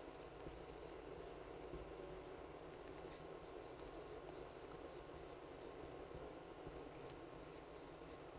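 Faint scratching and squeaking of a marker pen writing on a whiteboard, in short, irregular strokes.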